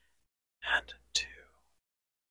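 Close-miked whispering into a small microphone: two short, breathy whispered bursts about half a second apart, the second starting around the middle.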